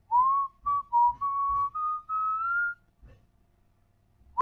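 A person whistling a short tune of about six held notes that step gradually upward in pitch, stopping about three seconds in.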